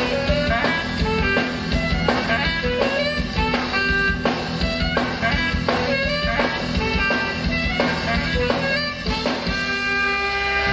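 Live band playing an instrumental passage: saxophones and keyboard over a drum kit keeping a steady beat of about two strokes a second. Near the end the beat stops and a chord is held.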